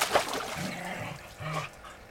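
Water sloshing and splashing in a plastic tub as a puppy paws at it, then a dog gives two short, low calls, the second about a second and a half in.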